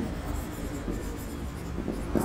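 Marker pen writing on a whiteboard: a tap as the pen meets the board at the start, then faint strokes of the tip across the surface.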